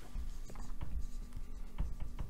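Marker pen writing on a whiteboard: a quick run of short, irregular strokes as a word is written out.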